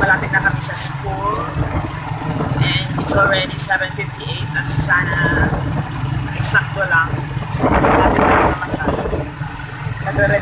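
Motorcycle engine of a tricycle running with a steady low hum, heard from inside the sidecar, with a louder burst of noise about eight seconds in.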